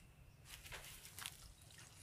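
Faint small water splashes and drips, several short ones in quick succession about half a second to a second in.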